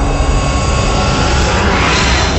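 Animated logo sound effect: a loud, dense rushing whoosh over a deep rumble, swelling and rising in pitch toward the end.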